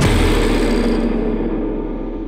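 The song's final chord rings out and slowly fades after the band stops, the high end dying away first, over a steady low hum.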